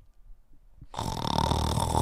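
A man's drawn-out, guttural, rasping vocal noise of exasperation, beginning about a second in and lasting just over a second.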